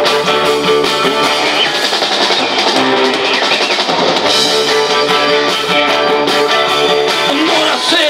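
Live rock band playing: electric guitars, bass guitar and drum kit, with sustained notes over a steady pulsing beat.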